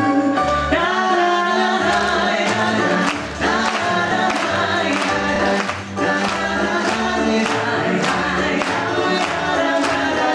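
A man and a woman singing a stage duet into microphones over backing music with a steady beat, heard through a theatre's sound system.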